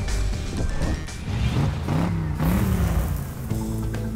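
Music with a pickup truck engine revving over it, its pitch rising and falling about halfway through.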